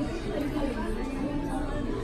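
Indistinct background chatter of several voices in a restaurant dining room, a steady low murmur with no clear words.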